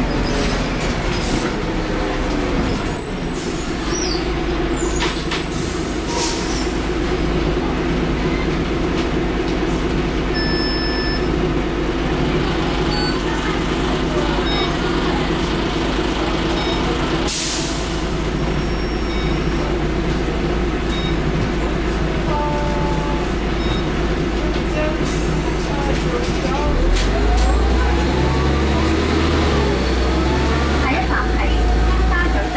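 Cummins LT10 straight-six diesel of a Leyland Olympian double-decker bus, heard from inside the lower deck, running steadily. A short hiss of air comes about halfway through. Near the end the engine gets louder and rises in pitch as it pulls away.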